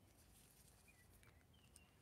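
Near silence: room tone, with a couple of faint, brief high chirps about a second in.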